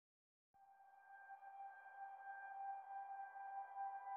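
Faint, steady electronic tone held on one pitch, coming in about half a second in and slowly swelling: the opening of background music.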